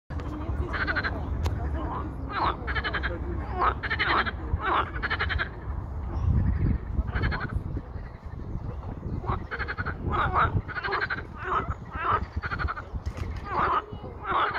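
A chorus of pond frogs croaking. Short croaks, each a quick run of pulses, follow one another and overlap without a break, with a low rumble underneath.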